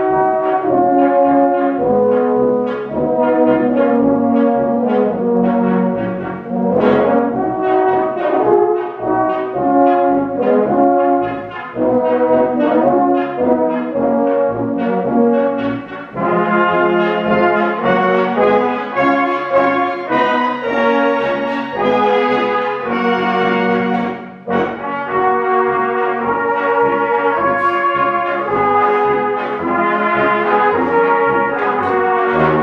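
Swabian-style brass band (Blaskapelle) of flugelhorns, clarinets, tenor horns and tubas playing a dance tune live, with short breaks between phrases about sixteen and twenty-four seconds in.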